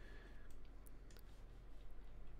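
A few faint, scattered clicks from a computer mouse.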